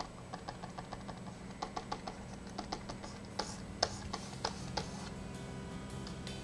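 Faint, irregular clicking of a computer keyboard and mouse, a few clicks a second, over a low steady hum.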